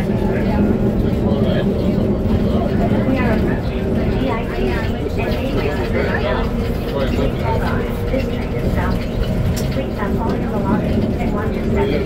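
Steady low rumble of an ATL SkyTrain automated people-mover car, a rubber-tyred Mitsubishi Crystal Mover, running along its elevated guideway, heard from inside the car. Voices chat quietly over it.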